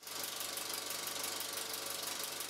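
Film projector running sound effect: a rapid, even mechanical clatter that starts abruptly.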